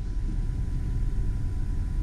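Low, steady rumble of the GMC Acadia Denali's 3.6-litre V6 idling, heard from inside the cabin.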